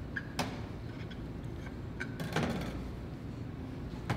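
Dough and its plastic wrapping handled on a stainless steel work table: a few light knocks and a short rustle about two seconds in, over a steady low room hum.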